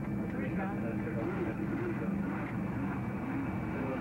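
Airliner cabin noise as the jet rolls along the ground after landing: a steady engine drone with faint, indistinct voices over it.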